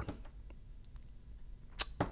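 Quiet room tone with a few faint ticks, then one sharp click near the end.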